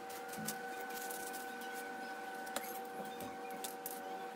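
A steady machine hum made of several fixed tones, with scattered light clicks and taps over it.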